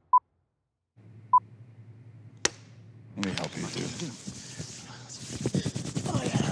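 Two short, loud beeps of one steady mid-pitched tone about a second apart, then a single sharp click a little later. From about three seconds in, men's voices and rustling, with two men grappling at close quarters.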